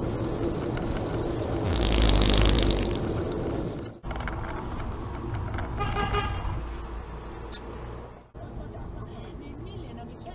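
Steady car road and engine noise heard from inside the cabin, louder for about a second near the start, with abrupt changes where the clips cut about four and eight seconds in. About six seconds in, a car horn sounds once, briefly, as a white van crosses a roundabout in front.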